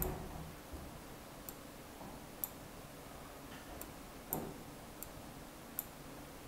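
Computer mouse clicking: about seven short, sharp clicks at irregular intervals over faint room noise, as objects are selected and materials applied in the software.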